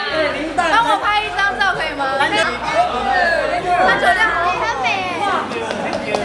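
Women talking and chattering over one another.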